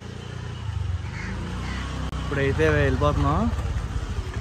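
Honda motor scooter's small engine running as it rides up close, a steady low rumble that gets louder about halfway through, with a voice calling out over it.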